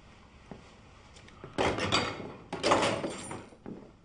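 Two rustling, scraping movement sounds, the first about a second and a half in and the second a second later, as a man turns and moves off. A few faint ticks come before them.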